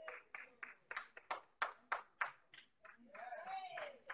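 Hands clapping in a steady rhythm, about four claps a second, in a church congregation. A single voice calls out briefly near the end.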